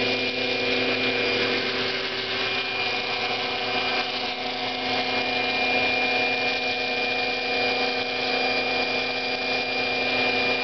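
Radio-controlled scale OH-58D Kiowa Warrior model helicopter hovering low, its motor and rotor making a steady whine of several held tones.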